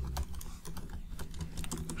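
Typing on a computer keyboard: a quick run of light key clicks.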